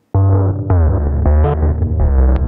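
A deep bass line sequenced in a looping pattern, made from a one-shot sample that is not a bass sound, played at a very low pitch and reshaped with plugins into an unusual bass texture. It starts just after the beginning, with heavy low notes under upper tones that bend in pitch.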